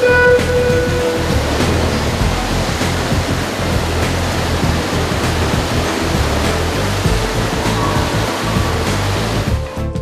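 A long electronic starting beep as the swimmer waits on the block, then the steady rushing noise of a swimming race: splashing water and spectators echoing in an indoor pool, with the bass of background music underneath.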